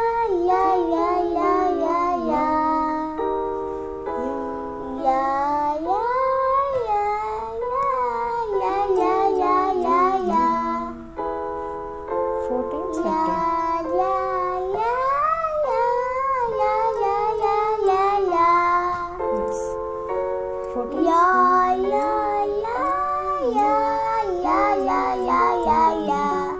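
A young boy singing a song at a slow tempo, his voice sliding between notes, over held notes from instrumental accompaniment.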